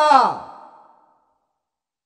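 A man's reading voice ends a sentence on a final syllable that falls in pitch and fades out with a short echo within about a second, followed by dead silence.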